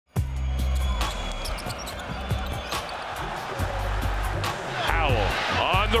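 Basketball game sound: a ball bouncing in short sharp knocks and sneakers squeaking on the hardwood court near the end, over background music with a steady bass.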